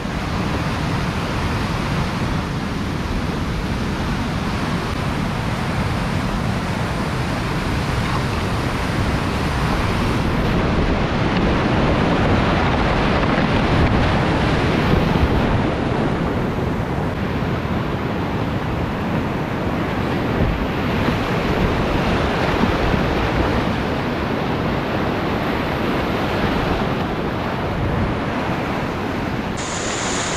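Rushing whitewater of a steep river rapid, heard close up from a kayak on the water: a loud, steady wash of water that swells a little about halfway through.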